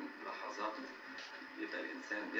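A man's voice talking from a television set's speaker, sounding thin, with little low end.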